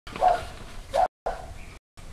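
A dog barking a few times, short barks spaced under a second apart.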